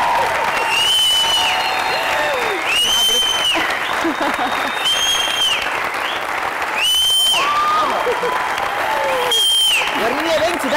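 A studio audience clapping and cheering. A shrill, high-pitched tone of about half a second sounds over it roughly every two seconds.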